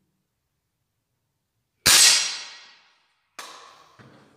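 Air rifle shot: one sharp report about two seconds in that rings out for about a second. A quieter clack follows about a second and a half later.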